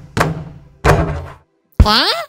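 Cartoon basketball sound effects: two hollow thuds of the ball striking, each dying away quickly, then near the end a short upward-gliding cartoon voice cry.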